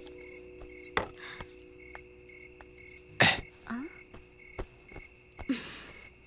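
A few sharp knocks and thuds, the loudest about three seconds in, over a faint high chirp repeating at an even pace.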